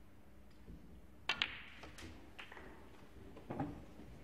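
Snooker balls clicking as a shot is played. The sharpest, loudest click comes a little over a second in, followed by a few lighter knocks.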